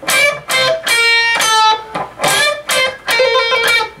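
Electric guitar playing a unison-bend lick twice: the B string is bent up to match a note fretted on the high E string, then single notes follow. Separate plucked notes, some held and some rising in pitch as the string is bent.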